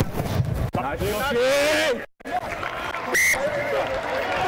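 Rugby penalty kick: a sharp thud of boot on ball right at the start, then players' voices shouting, and a short whistle blast about three seconds in.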